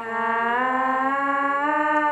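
A woman's voice singing one long wordless note that slides slowly upward and then holds, through a Boss VE-20 vocal processor.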